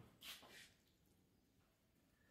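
Near silence: room tone, with one faint, brief soft sound in the first half second.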